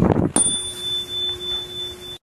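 A single bright ding about a third of a second in, then a steady ringing tone held for the rest of the clip: a bell-like sound effect for a channel logo.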